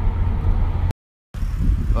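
Car cabin road noise: a steady low rumble from the engine and tyres while driving. It cuts off dead just under a second in for a short gap of total silence, then a similar low rumble resumes.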